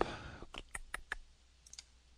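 A computer mouse clicking: a quick run of about five sharp clicks starting about half a second in, then a couple of fainter clicks near the end, as folders in a file dialog are browsed.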